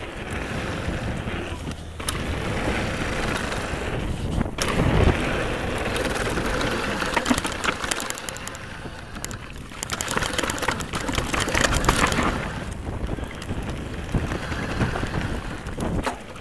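Nukeproof Scalp downhill mountain bike running fast down a loose gravel and slate trail: tyres crunching over stones, the bike's chain and frame rattling on the rough ground, and wind buffeting the chest-mounted microphone. A heavy thump about five seconds in, and bursts of rapid rattling where the trail gets rougher.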